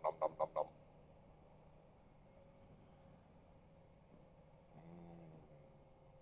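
A man's voice saying 'nom' at the start, then faint steady low hum. About five seconds in comes a brief low pitched hum, lasting about half a second.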